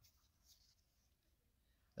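Near silence, with a faint, brief rustle of a baseball trading card being picked up off the pile about half a second in.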